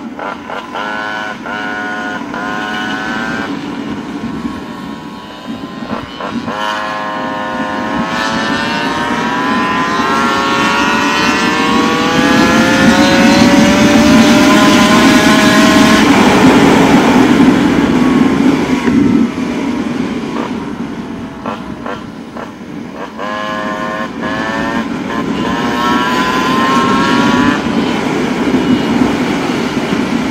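Small gas scooter engine accelerating: several short revs that each climb in pitch and break off, then one long steady climb in pitch that is the loudest part, then more short rising revs near the end. Heavy wind rush on the helmet microphone runs underneath.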